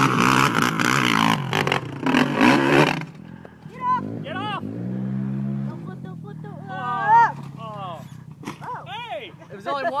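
Quad bike (ATV) engine revving hard for about three seconds, then cutting off suddenly. After that, voices cry out over a quieter low engine sound.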